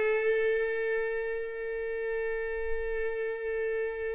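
Background music: a wind instrument holds one long, steady note.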